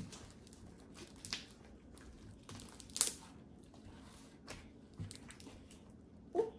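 Scattered crinkling and crackling from hands working slime and its materials, a few short sounds spread out, the sharpest about three seconds in.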